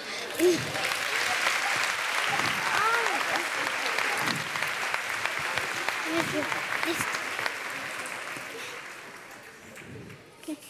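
Theatre audience applauding, with a few voices over the clapping; the applause dies away over the last couple of seconds.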